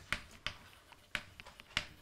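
Chalk on a chalkboard as handwriting is written out: a handful of sharp, irregularly spaced taps with faint scraping between them.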